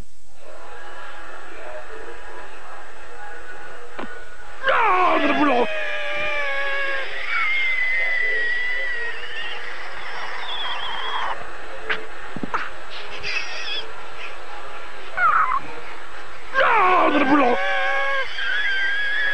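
Cartoon dog screaming in a high, wavering voice: a shriek that falls steeply in pitch about four seconds in, held quavering cries after it, short yelps later, and another falling shriek near the end, all over a steady hiss.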